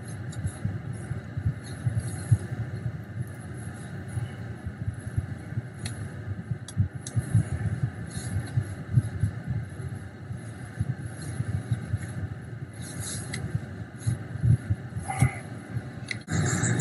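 Steady low rumble of a car engine idling, heard inside the cabin, with scattered rustles and knocks from a phone being handled.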